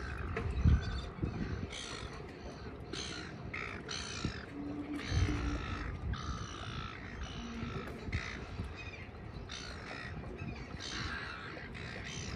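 Birds giving a run of harsh calls, about one a second, each call short and rasping. There are two low thumps, one just under a second in and one about five seconds in.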